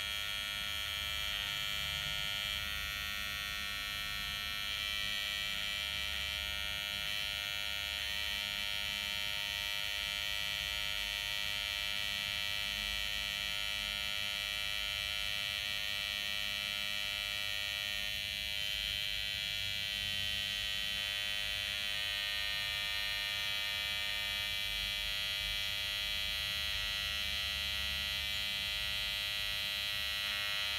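Philco Dual Action Maxx PCR12P hair clipper's motor running steadily at about 6,100 rpm, a constant high-pitched buzz. The machine has been freshly cleaned after running stiff.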